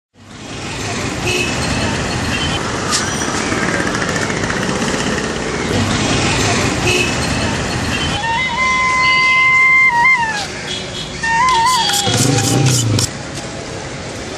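Heavy mixed city street traffic of engines from cars, auto-rickshaws, motorbikes and buses. A vehicle horn sounds one long steady blast from about eight to ten seconds in, and a few shorter wavering horn toots follow about a second later.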